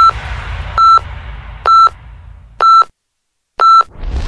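Electronic countdown beeps: five short beeps on the same pitch, about a second apart, counting down five seconds to the start of the news bulletin. A low rumble dies away beneath the first few beeps.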